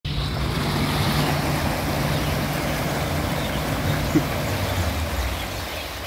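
Aeration tank of a wastewater treatment unit: steady churning, bubbling water over a low steady machine hum from the blower or pump driving the air.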